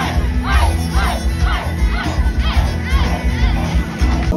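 Loud live dance music with a heavy bass beat, heard from inside a crowd, with a rising-and-falling figure repeating about twice a second and crowd voices shouting along.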